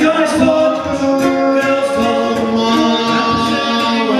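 Male voices singing held notes in harmony, with ukuleles strummed underneath.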